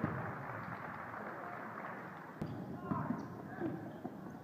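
Crowd noise in a school gym during a basketball game: many overlapping voices from the spectators and players, with a sharp knock about two and a half seconds in and a few louder shouts near the end.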